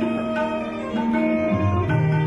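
Instrumental interlude of a Nepali ghazal ensemble without singing: plucked guitar notes over held lower notes that change every half second or so.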